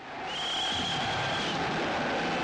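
Battle noise from a black-and-white First World War film's soundtrack: a steady roar that swells in over the first half second. A high whistle note is held for about a second near the start.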